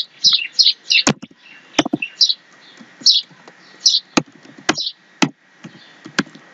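Separate computer keyboard keystrokes, a sharp click every half second or so as a line of code is typed. Behind them a small bird sings a string of short, high, falling chirps, several a second early on and then about one a second.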